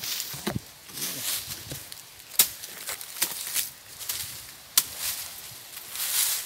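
Small hand digging tool striking into soil and dry leaf litter, with scraping and rustling of leaves between a few sharp, irregular strikes. It is digging out a metal-detector target that may be only a nail.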